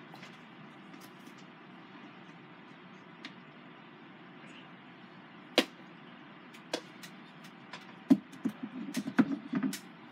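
Small objects being handled and set down on a table: a few sharp clicks and knocks about halfway through, then a busier patch of clatter and rustling in the last two seconds, over a steady low room hiss.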